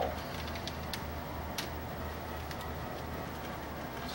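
Plywood coil-winding form turned by hand as magnet wire is wound onto it: a few light clicks over a steady low hum.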